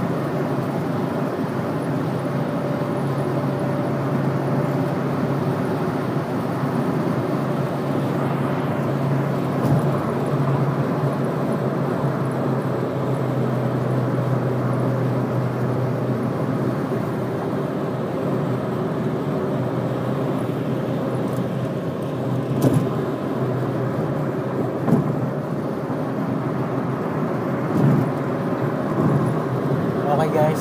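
Steady road and engine noise of a car cruising at freeway speed, heard from inside the cabin. A low drone fades out about halfway through, and a few brief knocks come in the last third.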